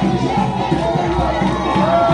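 Dance music with a steady beat playing loudly in a hall, over a crowd's shouting and cheering.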